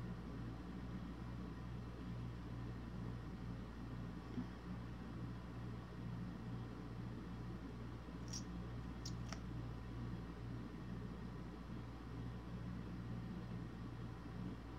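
Quiet room tone with a steady low hum, and a few faint small clicks about eight to nine seconds in as a liquid lipstick's applicator wand and tube are handled.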